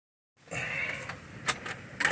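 Steady rain falling outside, an even hiss that starts about half a second in, with two short sharp clicks in the second half.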